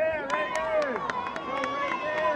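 Kumite sparring: high-pitched shouted yells that rise and fall, over sharp slaps of padded strikes and footwork on the mat about three times a second.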